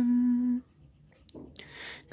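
A man singing unaccompanied holds a steady sung note that cuts off about half a second in. A short pause follows, with a soft in-breath just before the next line.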